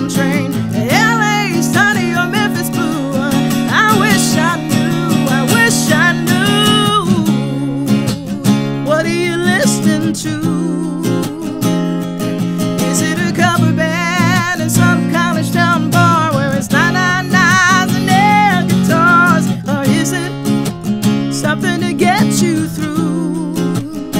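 Acoustic guitar strummed steadily, with a woman's voice singing long wavering notes over it; the voice thins out for a few seconds in the middle.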